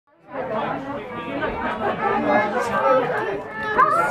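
Several people talking at once inside the cabin, voices overlapping, with one drawn-out gliding voice near the end.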